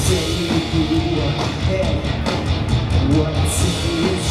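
Live rock band playing loudly: electric guitars and a drum kit.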